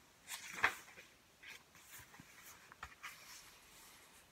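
Faint rustling and handling of paper as a page of a hardcover picture book is turned, with one sharper tap about two-thirds of a second in and smaller rustles after.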